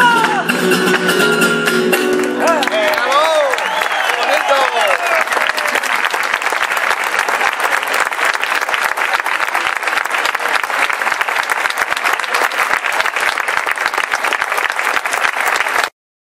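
A flamenco bulerías ends with the singer's last sung note over the guitar's closing chords; about two seconds in, the audience breaks into shouts and cheers, followed by steady applause.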